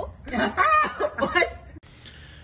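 Laughter in several short bursts, cut off sharply near the end.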